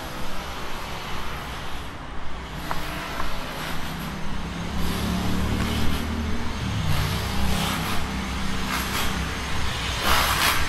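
A motor vehicle's engine running, out of view, with a low hum that grows louder about halfway through and then eases a little.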